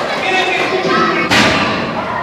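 A single sharp thud about a second in, with a short echo after it, over background voices.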